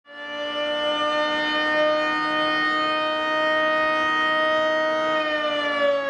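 Outdoor warning siren sounding a steady tone. It fades in at the start and begins winding down near the end, its pitch sliding slowly lower.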